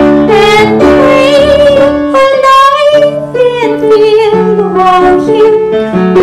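A woman singing a hymn into a microphone, with a wavering vibrato on held notes, accompanied by piano chords.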